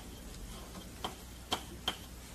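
Chalk on a blackboard while writing a word: three sharp taps in the second half, over faint room background.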